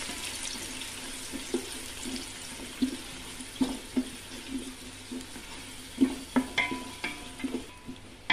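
Sliced onions sizzling in hot oil in an aluminium pot, a steady hiss. A wooden spatula stirring them knocks and scrapes against the pot about once or twice a second.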